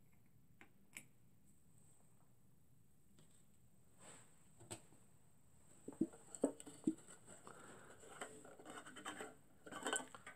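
Faint handling noise while a small denatured-alcohol burner is fuelled and set in place under a model Stirling engine: two small clicks, then after a few seconds a run of light taps, knocks and scraping.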